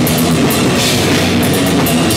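A heavy metal band playing loud and live: amplified bass and guitar over a drum kit, with cymbals struck in a steady, even run.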